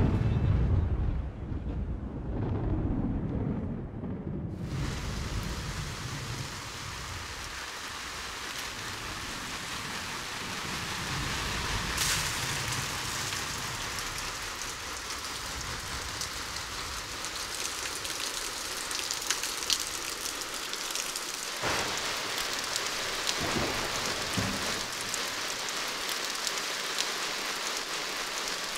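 A thunderclap with a low rumble that fades over the first few seconds, then steady rain.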